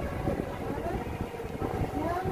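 Women's voices in casual conversation, with a low, uneven rumble underneath.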